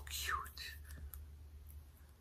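A soft, breathy whisper in the first half second, falling in pitch, then quiet room tone with a steady low hum and a few faint clicks.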